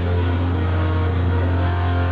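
Rock backing track in an instrumental passage with no vocals: a sustained low bass note held steady under electric guitar.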